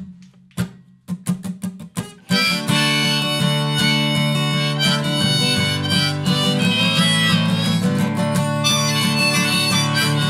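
Acoustic guitar strummed a few separate times, then about two seconds in a harmonica comes in and plays a sustained melody over steady strumming: the instrumental intro of a folk song for harmonica and acoustic guitar.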